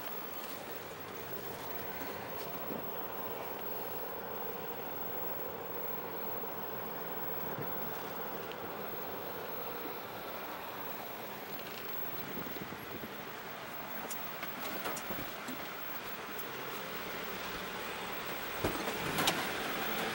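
Sprinter van driving slowly, heard from inside the cab: a steady engine and tyre noise, with a couple of knocks near the end.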